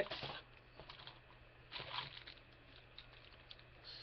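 Faint crinkling and rustling of clear plastic bags around model-kit sprues as they are handled, with a brief louder rustle about two seconds in.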